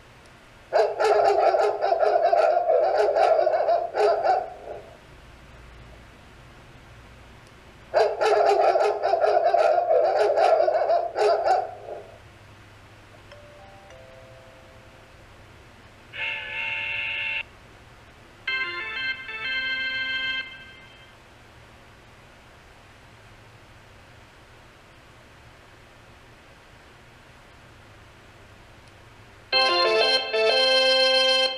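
Ring Chime Pro 'Dogs Barking' doorbell tone: a recording of a dog barking, played twice, each run about four seconds long. Short whistle-like tones from the 'Train Whistle' tone follow near the middle, and another chime tone begins right at the end.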